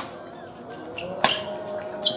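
A badminton racket strikes the shuttlecock once, a sharp crack a little over a second in, over a steady high chirring of night insects.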